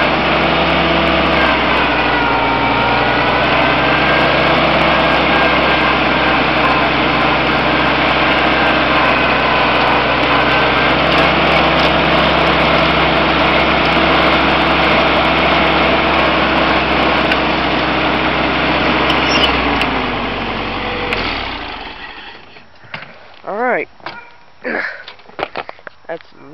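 1956 Farmall Cub's small four-cylinder engine running steadily as the tractor is driven, its pitch dipping slightly a couple of times. About twenty seconds in it winds down over a second or two and stops.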